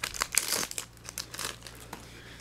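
Foil booster-pack wrapper crinkling as it is handled. There is a dense cluster of crackles in the first second, then a few lighter crinkles and clicks.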